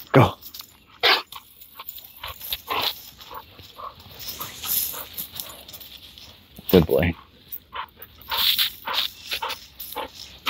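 A dog gives short downward-sliding vocal calls, one at the start and one about seven seconds in, between bouts of rustling and footsteps in dry leaf litter.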